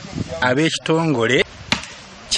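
A man speaking to the camera, with one short sharp click near the end.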